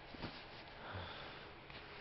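A faint sniff through the nose about a second in, over a low steady hum and a soft tick of handling noise.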